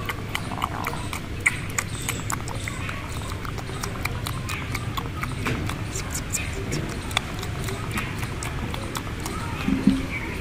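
Fluffy pink plush material rubbed and squeezed by fingers right against the microphone, a dense crackling of many small scratchy clicks over a low rustling rumble.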